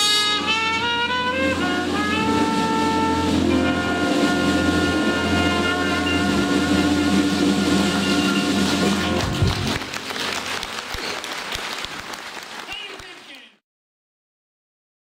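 Traditional jazz band playing the final bars of a tune, led by trumpet over piano, double bass and drums, ending on a held chord with a closing hit about nine seconds in. Audience applause follows and cuts off abruptly near the end.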